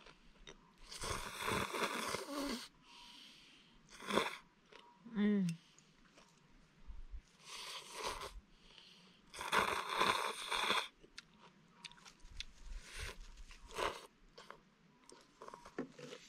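A person slurping ramen noodles from a bowl, in several noisy slurps a second or so long with chewing between. A short voiced sound rises and falls near the middle.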